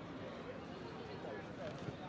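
Distant shouts and calls of footballers on the pitch, over a steady background of open-air stadium noise.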